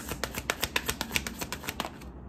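A tarot deck being shuffled by hand: a quick, rapid run of card clicks and snaps, about ten a second.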